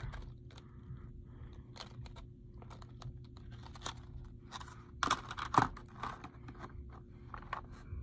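Clear plastic lure packaging crinkling and clicking as a soft swimbait is handled and fitted back into it, with two louder snaps about five seconds in. A faint steady hum runs underneath.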